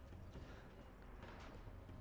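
Near silence: a faint low hum with two soft ticks.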